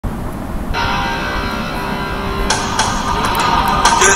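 Instrumental intro of a pop-rock backing track with guitar. The sound fills out under a second in and grows brighter about halfway through, with regular beat strikes.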